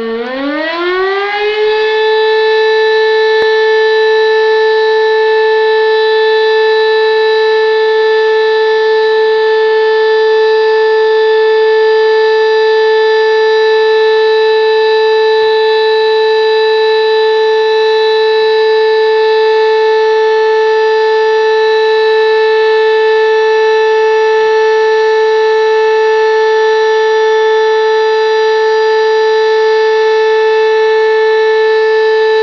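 A fire station's alarm siren sounding the call-out for volunteer firefighters: it rises in pitch over about two seconds, then holds one loud steady tone.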